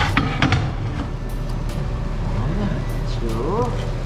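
A few sharp metal clinks with brief ringing as a steel hub plate is set and shifted on steel plate petals, over a steady low machine hum.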